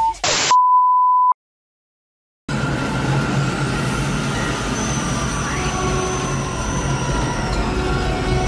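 A short beep and a burst of loud static, then a steady bleep tone held for under a second, cut off into about a second of dead silence. A steady hum and rumble with faint high held tones follows and runs on.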